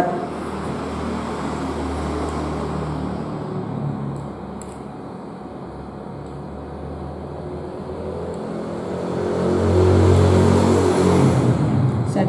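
A motor vehicle engine running and passing, heard as a steady rumble that swells loudest about ten seconds in.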